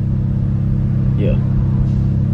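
Car engine idling, heard inside the cabin as a steady low hum. A single short spoken word comes a little over a second in.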